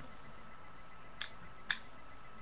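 Two short plastic clicks about half a second apart, the second louder, from a plastic shampoo bottle being handled.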